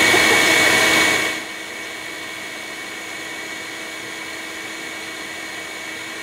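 Bee vacuum running with a steady hum. Its sound drops sharply about a second and a half in and then holds steady at the lower level.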